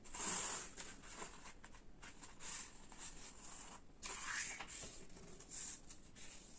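A sheet of colour paper being folded in half by hand and pressed flat against the table: soft paper rustling and sliding, in several short swishes.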